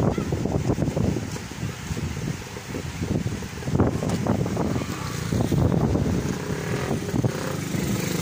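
A small motor scooter's engine running as it rides past close by, over a low, uneven rumble.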